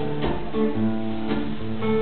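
Acoustic guitar strumming chords on its own, with no voice, as a live accompaniment amplified through the stage speakers.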